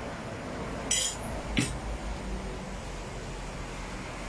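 Metal cutlery clinking twice against a bowl, about a second in and again half a second later, while breadcrumbs are spooned into a meatball mixture.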